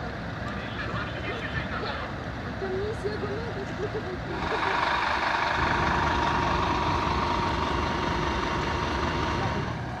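Faint voices over street noise, then about four seconds in a louder, steady engine idle with a held whine, from a parked emergency vehicle at close range.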